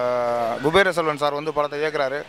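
A man's voice holding one level, drawn-out hesitation sound for about half a second, then talking on in quick speech.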